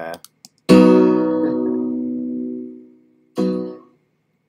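The last struck chord of a recorded instrumental track played back from the editing software, ringing out and dying away under a freshly drawn fade-out within about two seconds. A short second burst of the same chord follows near the end.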